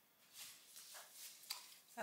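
Faint rustling and crinkling of a thin clear plastic disposable glove being handled and pulled on, in a few soft bursts.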